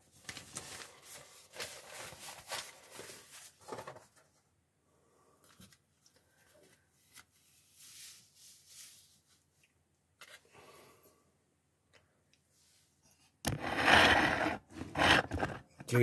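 Sheet of newspaper rustling and sliding across a magazine page, with crackly paper noise for the first few seconds and then faint scattered rustles. Near the end comes a louder burst of rustling.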